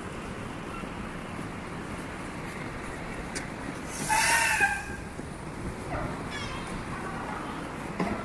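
Steady city street traffic noise, with one brief, loud, high wavering call about four seconds in.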